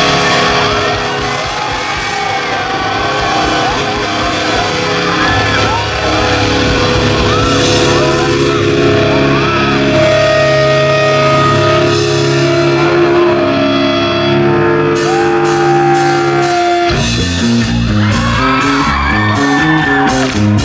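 Live rock band playing loud: electric guitars holding long notes over drums, with cymbals coming in near the end. About three seconds before the end the held chords give way to a choppy bass-and-drum riff.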